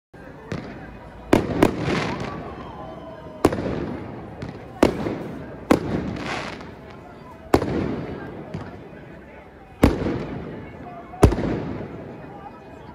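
Aerial fireworks bursting overhead: about nine sharp bangs, a second or two apart, each trailing off in a fading rumble and crackle.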